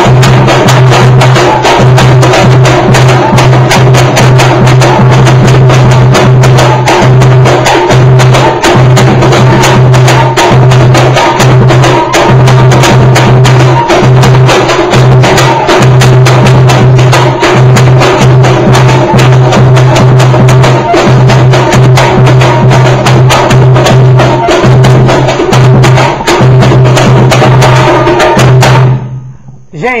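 Samba school bateria playing together: a large surdo bass drum carrying a heavy low beat under a snare drum (caixa) and other hand percussion in a fast, dense samba rhythm, very loud. It stops shortly before the end.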